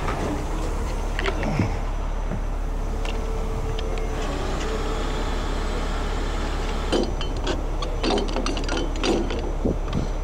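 A 50-ton rotator tow truck's engine running steadily, with metal clinks and clanks of hooks, shackles and wire rope being handled, about a second in and more often over the last three seconds.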